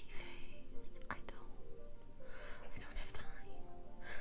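Soft, breathy whispering or exhaling from a woman twice, once near the start and again just past the middle, over faint music in the background.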